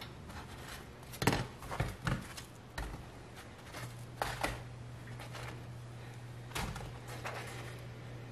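Toasted bolillo bread slices being picked up off a metal comal and set down on a plate: scattered light taps and knocks, about one every second, over a faint steady low hum.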